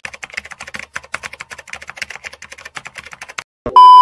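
Rapid keyboard-typing clicks, many a second, stopping about three and a half seconds in. A short, very loud electronic beep follows near the end.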